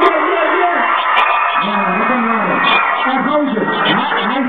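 A man's voice on the microphone at a live show, over a dense, steady background sound, the recording cut off above the upper midrange.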